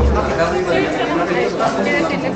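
Indistinct chatter of several people talking at once in a large room, their voices overlapping.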